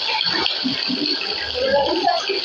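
Shallow water splashing and sloshing as people crawl through it on hands and knees, a steady wash of noise.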